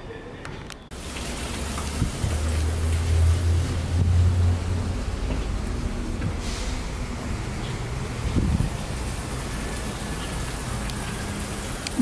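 Steady rain-like rush of water, starting abruptly about a second in, with a low rumble under it for the first few seconds.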